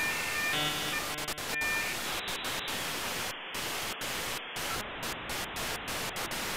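Static hiss sound effect of a glitch-style logo sting. A few short electronic tones sound in the first two seconds, then the hiss stutters, its upper part cutting in and out.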